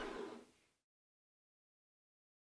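Near silence: a short fading tail in the first half second, then the sound drops out completely.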